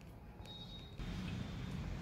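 Faint low background rumble with a few soft clicks, getting a little louder about a second in.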